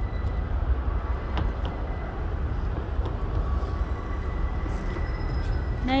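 Steady city road-traffic noise with a heavy, uneven low rumble, and a faint steady tone that comes in about halfway.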